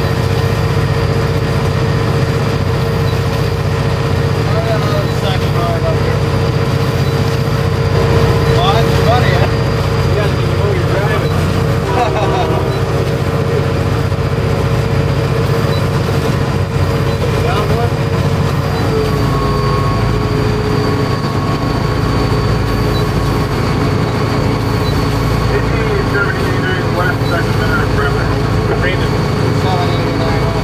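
Steady, loud drone of an EMD SD40-2 diesel locomotive's 16-cylinder two-stroke engine heard inside the moving cab, with steady whining tones over it. About twenty seconds in, the main whine drops a little in pitch and a higher tone comes in.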